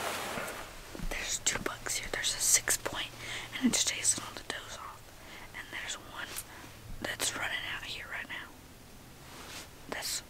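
Two or more people whispering in short, hushed exchanges.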